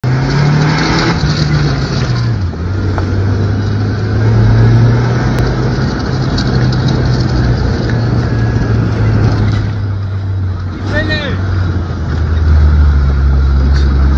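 A vehicle's engine running as it drives, a steady low drone whose pitch drops about two and a half seconds in and again near the end. A brief shout comes about eleven seconds in.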